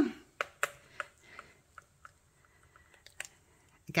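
A handful of faint, light clicks and taps from small cured resin castings being handled and set down on a wooden tabletop, bunched in the first couple of seconds with two more a little after the three-second mark.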